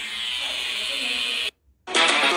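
Electric tattoo machine buzzing steadily, cutting off suddenly about one and a half seconds in. A short loud burst of sound follows near the end.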